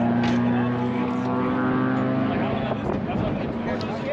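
A steady engine drone holding one pitch, fading out about three seconds in, with background voices.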